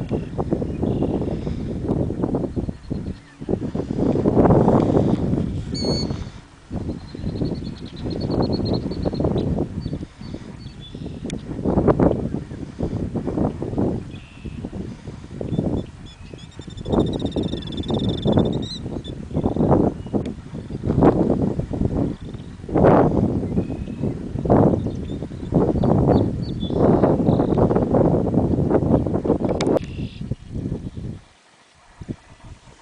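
Wind buffeting the microphone in uneven gusts, a low rumbling noise that swells and drops every second or two. Faint bird chirps sound behind it, a few seconds in and again around the middle.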